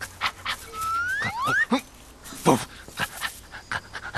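A dog panting in short breaths, with a slide whistle gliding upward twice about a second in and sliding back down a little later.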